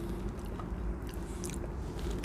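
Quiet chewing and mouth sounds of a person tasting a soft vegan cream-cheese spread, over a steady low hum.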